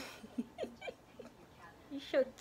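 Baby making a string of short vocal sounds, five or six quick coos and squeaks in the first second or so, after a sharp click at the very start.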